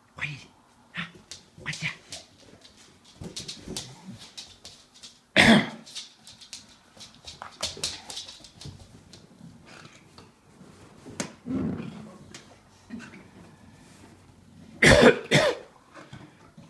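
A bulldog snorting and huffing in short breathy bursts as it noses and paws at balloons, with two loud cough-like snorts, one about five seconds in and one near the end.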